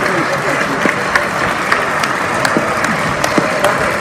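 Audience applauding steadily, with voices talking over the clapping.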